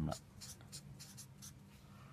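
Marker pen writing on notebook paper: a quick run of short scratchy strokes as a plus sign and two digits are written, stopping about a second and a half in.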